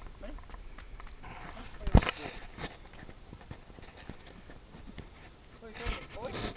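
A horse shifting its hooves on a dirt yard, with small scuffs throughout and one sharp knock about two seconds in, the loudest sound.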